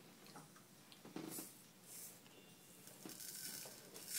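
Near silence: room tone, with a few faint, brief soft sounds.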